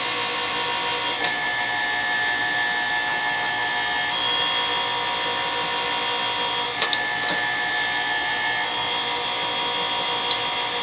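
Motor-driven jeweller's rolling mill running steadily as a soft 24k gold strip passes through its steel rollers: a steady electric gear-motor whine whose pitch steps slightly a few times. A sharp click about a second in and a quick pair of clicks near the end.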